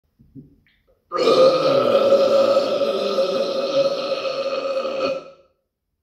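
One long burp from a man, starting abruptly about a second in and lasting about four seconds before fading out.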